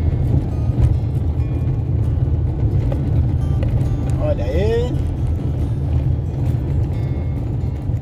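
Steady low rumble of a car driving over a stone-paved street, heard from inside the cabin, with a brief voice-like sound about four seconds in.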